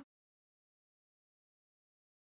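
Silence: the audio cuts out completely.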